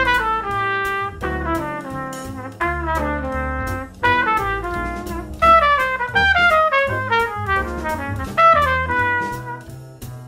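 Jazz trumpet playing short descending stepwise runs over a play-along backing track with bass and drums, each run falling from the third of the chord down through the ninth to the seventh, practised over a ii-V-I progression.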